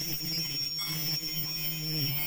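KF94 3D mask production machine (HY200-11) running: a steady low hum with a thin high whine held above it.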